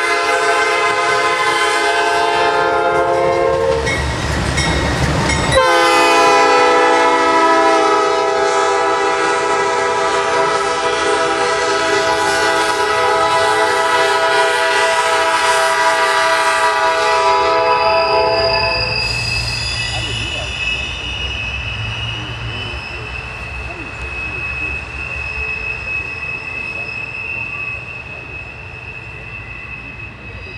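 Nathan P5 five-chime air horn on a Norfolk Southern GE Dash 8-40C leading an intermodal train, blown as it passes: one long blast, a short break filled by the loud rumble of the locomotives going by, then a second sustained blast of about 13 seconds. After the horn stops, the cars roll past with a steady high wheel squeal.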